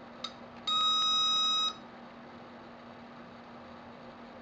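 Digital multimeter's continuity buzzer giving one steady beep of about a second as the probes touch the pins of a calculator's flat flex display cable: the probed line is conducting. A brief tick just before it.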